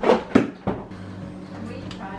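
Three quick knocks and clatters in the first second as a refrigerator's power plug is pushed into a wall socket behind the fridge, followed by a faint steady low hum.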